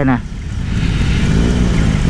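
BMW R18's 1802 cc boxer-twin engine running under the rider, its low rumble steady at first and then rising slightly in pitch about a second in, as when the throttle is opened.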